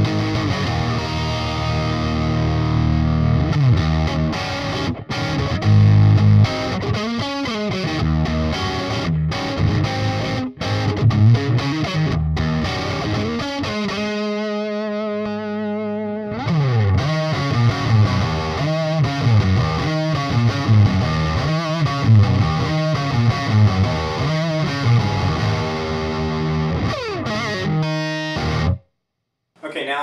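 Electric guitar, a Fender Telecaster with DiMarzio humbucking pickups, played through a Splawn Quick Rod tube head and 2x12 cabinet on a heavy rhythm setting with thick distortion, chugging riffs and chords. About halfway through a chord is left ringing for two seconds, and the playing cuts off suddenly near the end.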